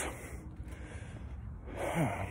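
A man's audible breath drawn in close to the microphone near the end, after a short mouth click at the start, over a low steady background hum.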